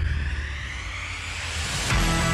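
An intro sound effect: a deep low rumble that starts suddenly, with a hiss that swells and rises in pitch, leading straight into the intro music.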